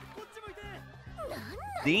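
Anime episode audio: Japanese character voices calling out over background music, with a high, arching voice rising near the end.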